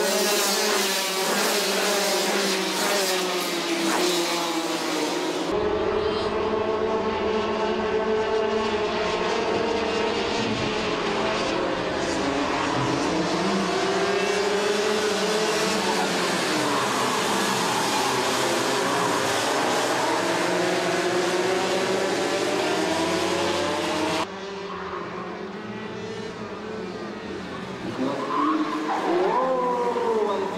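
Several two-stroke racing kart engines running hard on track, their pitches overlapping and rising and falling as the karts accelerate, brake and pass. The level drops for a few seconds after about 24 seconds in. Then a kart sweeps close by near the end with a quick rise and fall in pitch.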